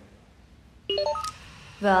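Electronic sound effect: a quick run of four short beeps, each higher in pitch than the last, about a second in, lasting about half a second.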